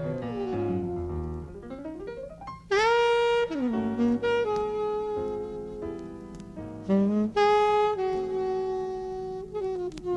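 Jazz music led by a saxophone, playing a melody of held notes; it slides up into a loud sustained note about three seconds in and hits another loud note near seven seconds.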